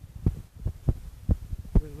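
Footsteps on a gravel forest road: dull, uneven thumps about two or three a second. A short shout of 'bravo' comes near the end.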